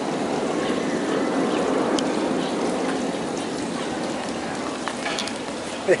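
Steady rain falling, an even patter without a break.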